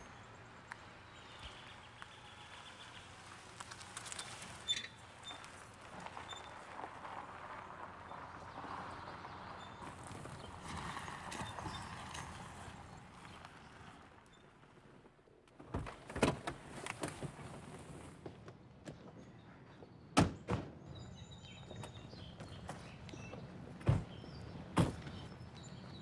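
Faint, steady car and street noise, then a series of sharp thunks from about two-thirds of the way in: car doors being opened and shut.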